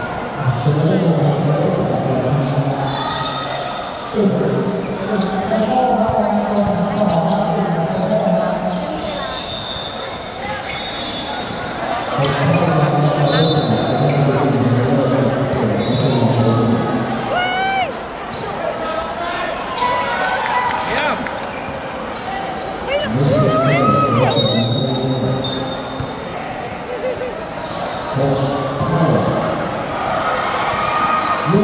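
Basketball bouncing on a hard court during play, with short sneaker squeaks and voices of players and onlookers calling out throughout.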